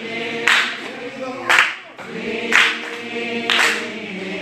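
A group of voices singing a gospel song together, unaccompanied, with a sharp beat about once a second.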